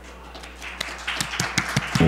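Audience applause starting up, scattered claps at first that thicken and grow louder as more people join in.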